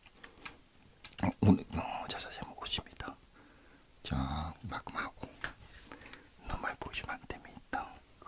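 A person whispering and muttering quietly in short broken phrases, with scattered small clicks between them.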